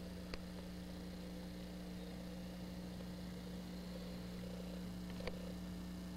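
Domestic cat purring steadily and quietly over a constant low electrical hum, with a small click near the start and another near the end.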